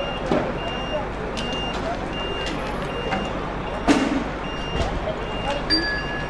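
A vehicle's reversing alarm beeping steadily, short high beeps about once a second, over the noise of a crowd. A single sharp bang cuts through about four seconds in.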